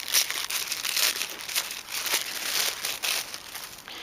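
Paper or plastic wrapping crinkling and rustling unevenly as it is handled while the next lace trim is taken out.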